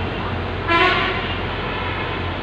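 A single short vehicle horn honk about two-thirds of a second in, one steady note lasting under half a second, over a steady hum of street traffic and running engines.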